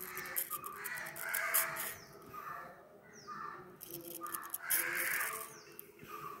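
A crow cawing over and over, several harsh calls about a second apart, the loudest about one and a half and five seconds in. Under it comes the crackling scrape of a safety razor cutting through hair at the hairline.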